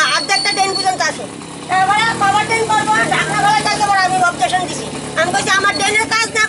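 A woman speaking in Bengali, talking straight on with only a brief pause about a second in. A vehicle engine runs faintly in the background.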